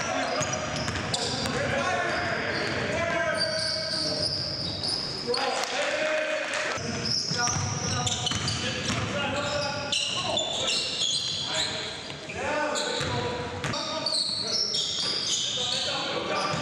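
Basketball game sounds in a gym: the ball bouncing on the hardwood as players dribble, sneakers squeaking in short high chirps, and players' voices calling out, all echoing in the hall.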